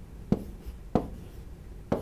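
Stylus pen writing on an interactive touchscreen whiteboard: three short, sharp taps of the pen tip on the screen, with faint strokes between them.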